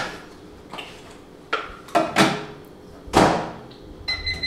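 Microwave door being opened and shut as a dish is put in: a series of clicks and knocks, the loudest about three seconds in.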